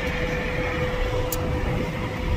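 Steady engine and road rumble heard from inside the cabin of a moving shared passenger van, with a steady mid-pitched hum over it and one brief high tick a little past the middle.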